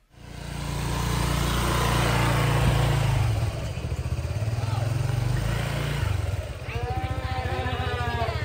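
Small motor scooter's engine running as it rides in, swelling up in the first second. The note eases off about three and a half seconds in and drops to a lower, evenly pulsing idle about six seconds in as the scooter slows.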